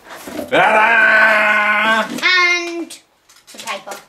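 Voices only: one long held sung note, then a short burst of higher-pitched laughter about two seconds in.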